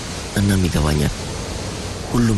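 A man's voice speaks briefly, over a steady hiss of background noise.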